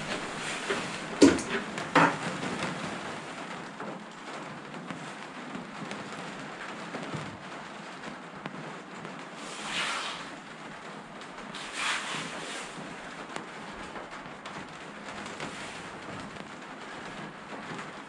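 Metal parts of a loudspeaker compression driver being handled by hand: two sharp clicks a second or two in, then two soft rustling swells later on, over a steady hiss.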